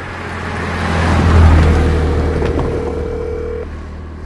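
A car passing: the sound of engine and tyres swells to a peak about a second and a half in, then fades, over a deep steady rumble.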